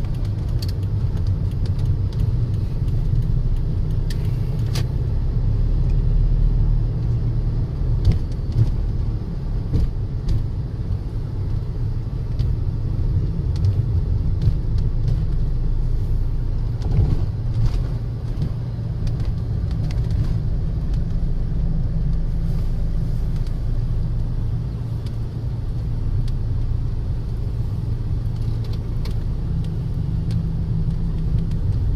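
A car driving along a road, its engine and tyre noise a steady low rumble heard from inside the cabin, with a few small clicks.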